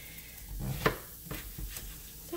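Knife cutting down through a whole patty pan squash on a plastic cutting board, with one sharp knock a little under a second in.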